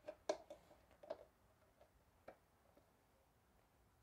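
Near silence in a small room, with a few faint ticks in the first couple of seconds.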